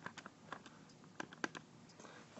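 Faint, light clicks of keys being tapped, about seven at uneven spacing, as a calculation is keyed in.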